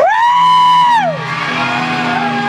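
A loud, high yell that rises, holds for about a second and then slides away, over a live punk rock band's guitars and bass ringing on.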